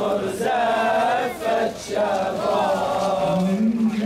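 A crowd of marchers chanting slogans together, with one nearby man's voice standing out and rising in pitch near the end.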